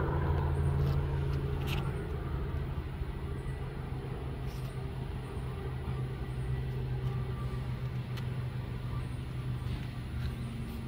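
Ryobi 20-inch brushless battery push mower running while cutting grass: a steady hum of the electric motor and blade over a hiss of cut grass, a little louder during the first two seconds.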